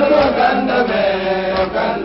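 Islamic devotional chanting for the Mawlid, sung by voices on a melody that holds and shifts its notes.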